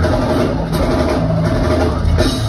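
A metal band playing live and loud, with drum kit and bass drum pounding under bass and electric guitars, heard from the crowd in the venue.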